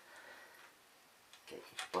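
Near-quiet workshop room tone for about a second and a half, then a man's voice starting to speak near the end.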